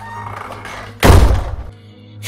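A door slammed shut about a second in: one heavy thud that dies away within half a second, over tense background music.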